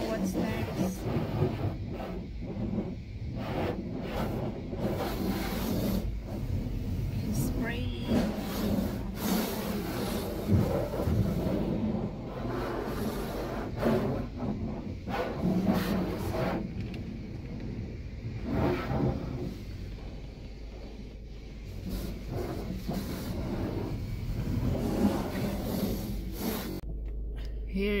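Self-service car wash pressure wand spraying water against the car body and windows, heard from inside the cabin as a rushing hiss that swells and eases as the spray sweeps across.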